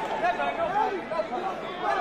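Overlapping voices of an arena crowd, talking and calling out at the same time.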